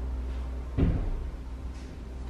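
A door shuts nearby with a single dull thud a little under a second in, over a steady low hum.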